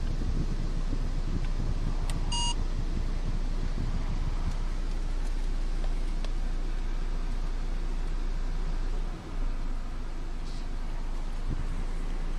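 Steady low rumble of a Nissan car idling, heard from inside the cabin, with a short electronic beep about two seconds in.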